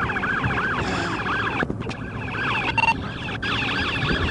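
Police car sirens on fast yelp, rising sweeps repeating about three times a second, with more than one siren overlapping. A short steady tone sounds briefly a little before the end.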